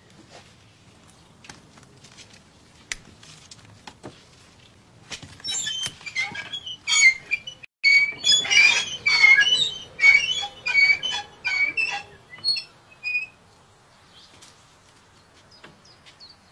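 Small birds chirping in a quick, busy run of short high calls for several seconds in the middle, after a few faint clicks.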